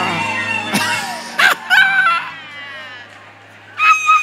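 Music with a voice singing in gliding, drawn-out calls, broken by a brief loud burst about a second and a half in. The sound fades low near the end before steady held notes come back in.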